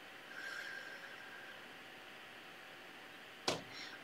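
Quiet room tone with a faint steady hiss and a faint thin hum. A soft brief whoosh comes about half a second in, and a single short sharp click comes shortly before the end.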